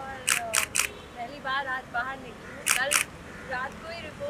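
Camera shutters firing in quick bursts: three sharp clicks within the first second, then two more about three seconds in, with faint voices in between.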